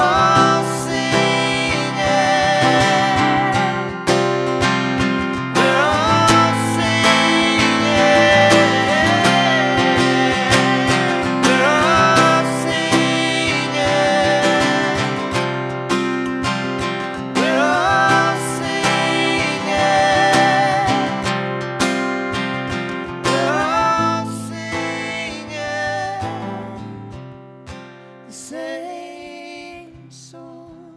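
Live acoustic song: a steel-string acoustic guitar is strummed under voices singing long held notes. The song dies away over the last few seconds.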